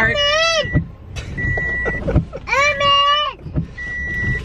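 A young child's high-pitched voice, drawn out twice with no clear words, inside a car cabin over a low rumble. A short electronic beep sounds between the calls.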